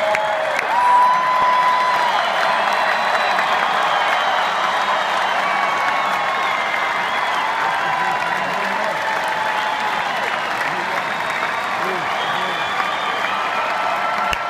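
Large arena crowd applauding and cheering steadily, with scattered shouts and whistles over the clapping; a long high call about a second in is the loudest moment.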